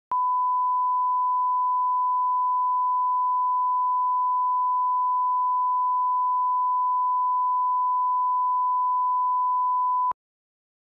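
A 1 kHz line-up reference tone played with SMPTE colour bars: a single steady pure tone held at constant pitch and level.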